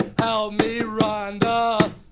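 A man singing held, wordless notes in a rough, unaccompanied voice, with sharp percussive knocks keeping a loose beat a few times a second.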